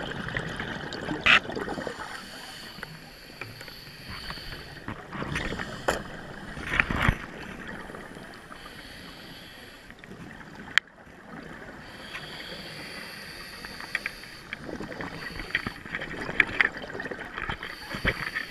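Scuba diver breathing through a regulator underwater, heard muffled inside a GoPro housing: bursts of exhaled bubbles every several seconds, with a few sharp clicks between.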